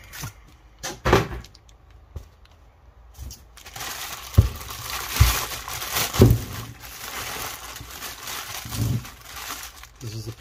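Clear plastic bag crinkling and rustling as a heavy alternator is lifted out of its cardboard box and unwrapped by hand. There is a knock about a second in, and the crinkling runs on steadily from about three and a half seconds in, broken by a few sharp knocks.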